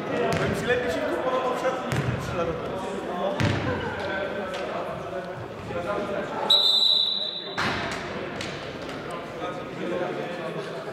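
A referee's whistle: one steady, shrill blast about a second long, starting about two-thirds of the way in. Around it are the echo of voices in a large hall and a few sharp thuds.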